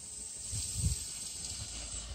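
Twin-engine radio-controlled F7F Tigercat model taxiing on grass, its motors and propellers giving a steady high hiss that swells a little. A few low thumps sound partway through.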